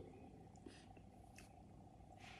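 Near silence: faint room tone with two faint clicks in a pause between sentences of speech.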